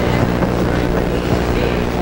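Steady low electrical hum with a hiss above it, the background noise of an old VHS sound track, with no distinct event.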